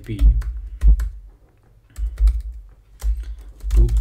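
Typing on a computer keyboard: a quick run of key clicks with low thumps, pausing briefly about a second in before the clicking resumes.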